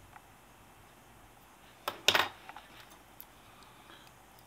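Fly-tying tools being handled and set down: a couple of sharp clicks about two seconds in, the second the louder, then a few faint ticks over quiet room tone.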